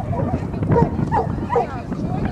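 A small dog barking about three times in quick succession.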